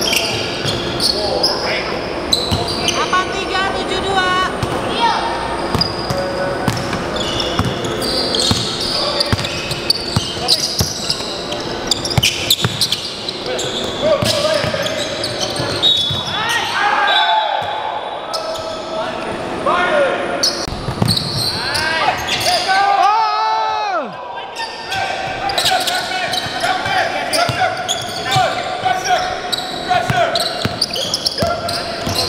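A basketball bouncing on a hardwood gym floor during live play, with players' indistinct voices echoing in the hall. Sharp squeaks, typical of sneakers on the court, come twice near the middle.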